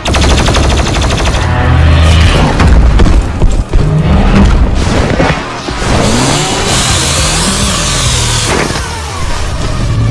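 Action-animation soundtrack: a rapid burst of machine-gun fire for the first second and a half, then heavy music with booms, and a whine that rises and falls near the end.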